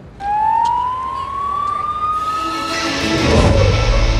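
Emergency vehicle siren: one long wail rising slowly in pitch. About three seconds in, music with a deep bass comes in over it.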